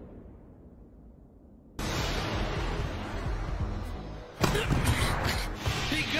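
Anime soundtrack spliced from clips: a low rumble fades almost to quiet, then a dense, noisy passage with background music starts abruptly about two seconds in, and a second abrupt cut about four and a half seconds in brings a louder passage.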